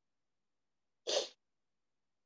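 A single short sneeze about a second in, with near silence around it.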